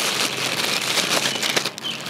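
Clear plastic packaging bag crinkling and rustling steadily, with small crackles, as cart parts are handled and unwrapped.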